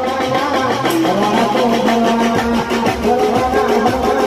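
Live Gujarati garba music played loud and steady: a regular percussion beat under held melodic notes and a sustained bass line.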